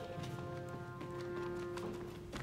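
Opera orchestra holding a soft sustained chord under a pause in the singing, with a few light knocks on the stage floor. The chord fades just before the end.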